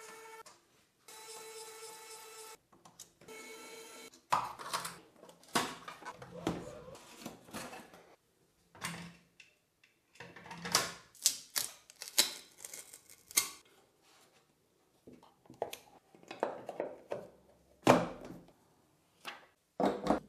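Electric precision screwdriver whirring in three short runs as it backs out the build plate's shipping screws, followed by scattered clicks and knocks of plastic and metal parts being handled on the 3D printer, with one sharp knock near the end.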